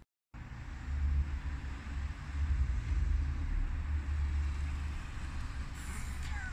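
Peugeot 107's small three-cylinder petrol engine running as the car drives up and pulls in, a steady low rumble that grows a little louder about two seconds in.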